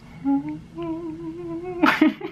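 A man vocalizing a held note with his mouth open: a short lower note, then a longer, slightly higher one that creeps upward. It is cut off near the end by a louder sudden sound.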